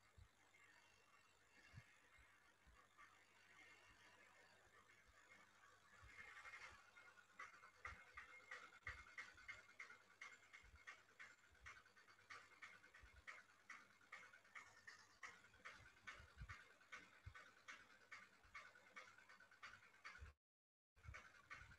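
Near silence, then from about six seconds in a faint, quick, rhythmic panting, several breaths a second.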